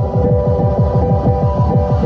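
Electronic synthesizer music: a held chord over a fast, evenly repeating low pulse, at full volume.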